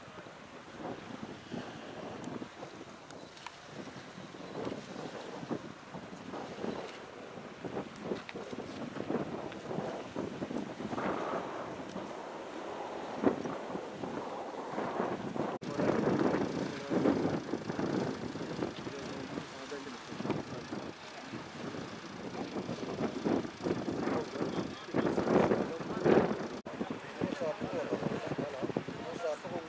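Indistinct voices of several people talking outdoors, growing louder about halfway through and again near the end.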